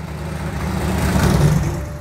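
Supercharged drag car, blown by a GMC 6-71, driving past: its engine note swells as it approaches, peaks about a second and a half in, then fades as it moves away.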